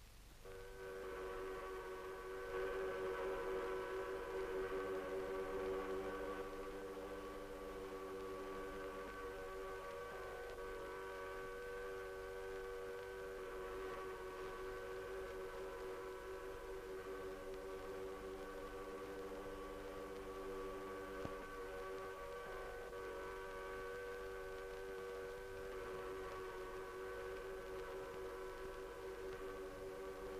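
Several steam hooters sounding together at different pitches, held as one long steady chord at a fair distance, a little louder in the first few seconds; two of the lower notes drop out for a while and come back.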